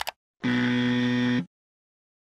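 A short click sound effect, then an electronic buzzer sounding one steady, unchanging tone for about a second.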